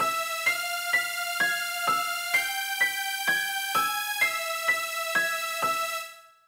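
Music: a piano-like keyboard playing a repeating figure of notes about two a second over a sustained held tone, the melody notes shifting in pitch midway.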